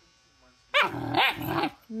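A puppy growling and barking in one rough burst of about a second, starting around the middle, while it play-bites at a person's hand.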